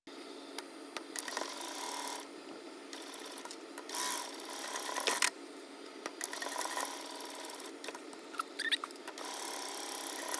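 Sewing machine stitching a seam through folded fabric, running in spurts: louder stretches of about a second alternate with quieter running. A few sharp clicks come near the end.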